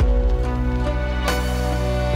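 Background film score: held chords over a deep bass note that enters at the start, with one percussive hit a little past halfway.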